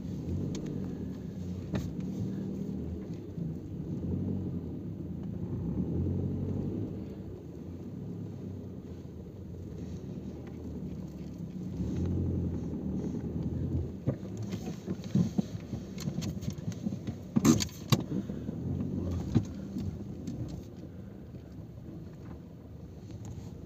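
A vehicle's engine running at low speed, a steady low rumble heard from inside the moving vehicle. In the second half there are scattered knocks and rattles, the loudest about seventeen seconds in.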